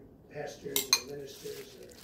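A spoon clinking against a bowl while eating, with two quick sharp clinks just under a second in.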